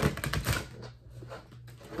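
A deck of tarot cards being riffle-shuffled: a rapid run of crisp card clicks.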